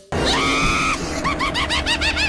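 A man's scream held for about a second, then a shrill, rapid cackling laugh.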